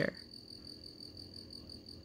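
A faint, steady, high-pitched trilling tone, with the end of a spoken word at the very start.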